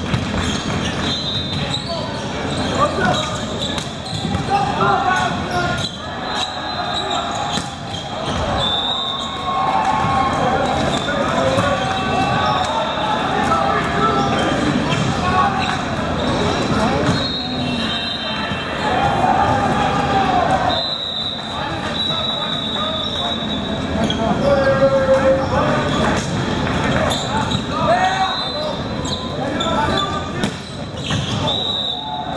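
Volleyball play in a large gym: the ball is struck again and again by hands and hits the floor, in short knocks and slaps, amid players' calls and shouts and spectators' voices that carry around the hall.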